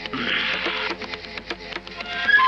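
Film background score: a fast, even clicking percussion rhythm over low sustained tones, with a hissing swell in the first second.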